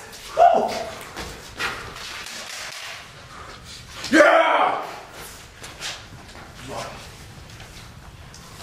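Short bursts of a young man's voice, once about half a second in and again, louder, just after four seconds, amid faint shuffling and small clicks.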